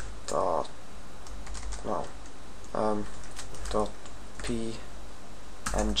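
Computer keyboard typing: scattered single keystrokes and short runs of clicks as code is entered, broken by brief mumbled vocal sounds.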